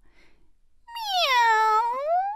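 A domestic cat's single long meow, starting about a second in, its pitch dropping and then rising again.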